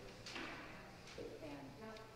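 Faint, indistinct talking of people, too far off to make out words.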